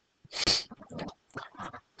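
A short breathy burst from a person about half a second in, followed by faint, low voices.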